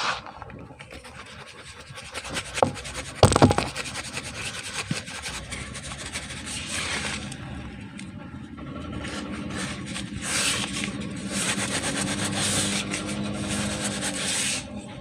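Hands pressing, rubbing and crumbling dry cement powder in a plastic bowl, a gritty rasping with a sharp burst of crackling about three seconds in.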